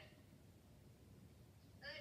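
Near silence: quiet room tone, with one short high-pitched vocal sound near the end.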